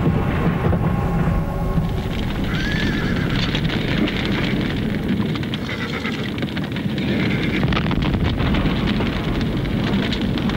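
Horses whinnying, twice, over a loud steady rushing noise full of crackles.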